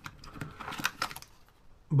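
Anti-static plastic bags holding carbon fibre frame plates being handled: a few light crinkles and clicks in the first second, then it goes quiet.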